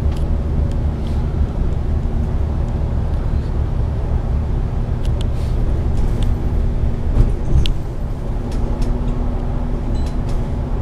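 Interior of an Alexander Dennis Enviro500 MMC double-decker bus cruising: a steady low engine and road rumble, with a few light clicks and rattles from the bodywork about five to eight seconds in.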